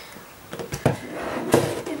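Clear plastic display box being handled and turned over on a tabletop, with two knocks under a second apart and some faint rubbing of the plastic.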